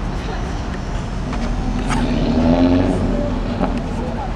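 City street traffic: a steady low rumble of cars and a bus, with one vehicle running louder for a couple of seconds near the middle.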